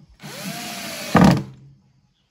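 Cordless drill-driver driving a small screw into a metal hasp plate on a wooden chest: the motor spins up with a rising whine that levels off, then a short louder burst just past a second in before it stops.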